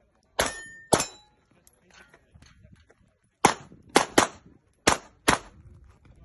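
CZ SP-01 pistol firing: two shots about half a second apart, a pause of a couple of seconds, then a quick string of five shots.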